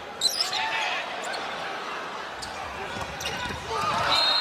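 Indoor volleyball rally on a hardwood court in a large gym: a steady crowd murmur, sneakers squeaking, and several sharp hits of the ball. The crowd gets louder near the end.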